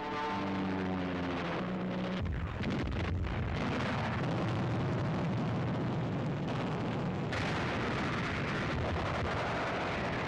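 A propeller aircraft engine drone, falling slightly in pitch for about two seconds. Then a continuous, dense roar of bomb and shell explosions runs on to the end, as battle sound on a 1940s newsreel soundtrack.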